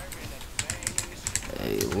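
Computer keyboard keys tapped in a quick run of clicks, a short value being typed in; a voice comes in near the end.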